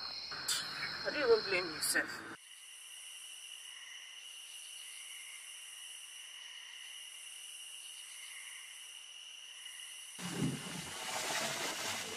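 Crickets and other night insects chirping in a steady, high, even chorus. A short voice-like sound comes in the first two seconds, and a rumbling noise sets in near the end.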